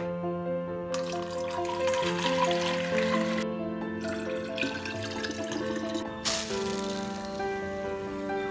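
Liquid pouring into the neck of a plastic pump-sprayer tank. The pour starts about a second in and breaks off briefly twice, over soft background music with sustained notes.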